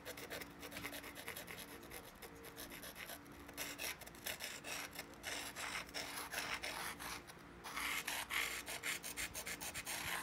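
Abrading stone rubbed back and forth along the edge of an obsidian knife blade in rapid scraping strokes, stone grinding on glassy stone to even out the edge before pressure flaking. The strokes pause briefly about seven seconds in and are loudest near the end.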